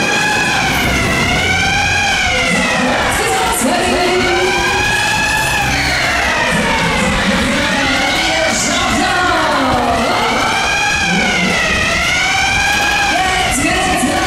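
A wailing siren sound effect, rising and falling about every four seconds, played over the fairground ride's loudspeakers on top of loud music while the Disco Jet runs backwards.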